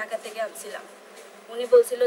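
A woman speaking in Bengali, her voice thin with no bass, pausing in the middle before speaking again near the end.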